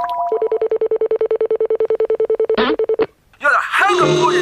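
Cartoon sound effect: a steady electronic buzzing tone, pulsing rapidly, lasting about two seconds and then cutting off. After a brief gap, quick squeaky rising and falling chirps come in near the end.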